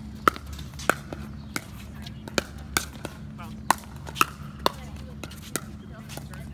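Pickleball paddles striking a hard plastic pickleball in a fast volley rally: a string of sharp pops about half a second to a second apart, about nine in all.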